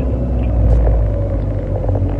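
Steady low rumble of a car's road and engine noise heard inside the cabin while driving, a little louder about a second in.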